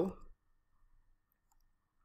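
A voice trails off, then near silence with a few faint clicks about a second in, from computer input as the cursor is moved in the code editor.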